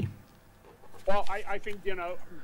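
Near silence for about a second, then a man's voice starts speaking, quieter than the speech around it.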